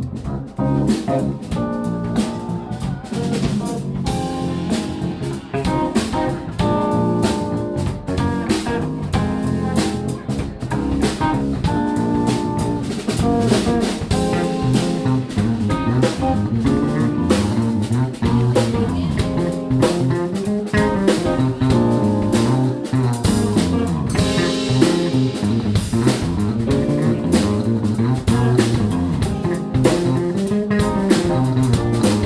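Live instrumental trio of electric guitar, electric bass guitar and drum kit playing a jazzy groove, the bass moving in melodic lines under steady drum and cymbal strokes.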